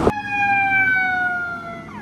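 Emergency vehicle siren wailing: one long tone sliding slowly down in pitch, fading and cut off near the end.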